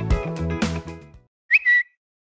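Intro music with drums and bass stops about a second in. Shortly after comes a brief high whistle sound effect: a quick upward slide, then a short held note.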